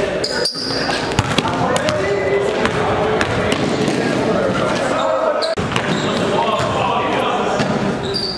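Basketball game sounds in a gym: the ball bouncing on the hardwood, sharp knocks, a few short high sneaker squeaks, and players' indistinct voices echoing in the hall.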